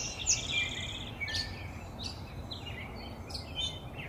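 Wild songbirds chirping, many short calls and brief trills overlapping one another, over low steady background noise.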